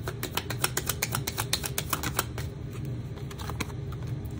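A deck of tarot cards being shuffled by hand: a fast run of crisp card clicks for about two seconds, which then thins out to scattered clicks.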